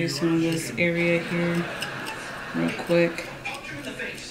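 A voice in the background making a string of short held notes at a steady pitch, with a few light clicks.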